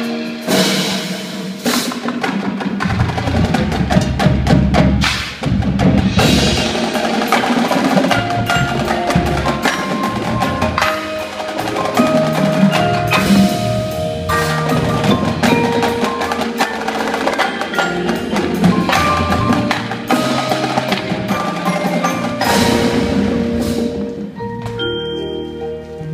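Indoor percussion ensemble playing: a marching battery of snare, tenor and bass drums with cymbals, over a front ensemble of marimbas and vibraphones sounding sustained pitched notes.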